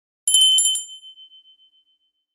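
A high, metallic bell ring used as an edited sound effect: a quick run of rapid strikes, then one high ringing tone that flutters as it fades out over about a second.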